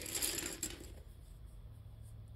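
Faint handling and rustling noise for the first second or so, then a quiet room with a low steady hum.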